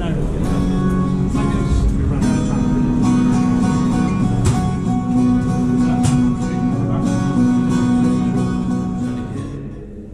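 Music led by a strummed acoustic guitar, with held notes, fading out near the end.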